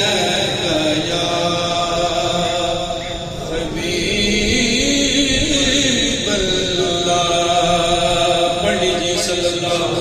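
A man's solo voice chanting Islamic devotional recitation, salutations on the Prophet, unaccompanied through a handheld microphone. It moves in long, slowly bending melodic notes, with a short break for breath about three seconds in.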